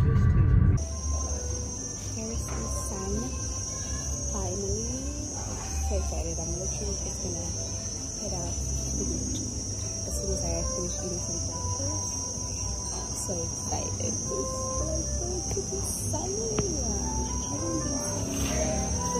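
Steady high-pitched drone of insects, with indistinct voices underneath.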